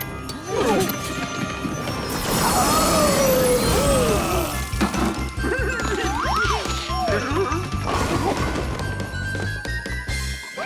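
Cartoon chase soundtrack: fast action music with a driving low beat from about halfway, crash and smash sound effects, and long wavering cartoon cries.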